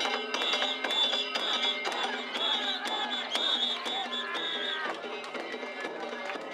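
Danjiri festival music (narimono) played on the float: drums and rapid metallic gong strikes over a sustained high tone, with crowd voices, growing quieter about five seconds in.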